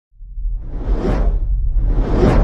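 Video-intro whoosh sound effect over a deep low rumble. The whoosh swells to a peak about a second in and fades, and a second whoosh begins to build near the end.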